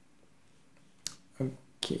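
Near-silent room tone, broken about a second in by a single sharp click. A short, soft mouth or breath noise follows just before a spoken "okay".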